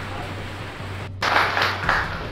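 Brief scattered clapping and crowd noise over a steady low electrical hum, with a short break about a second in where the clips are cut together.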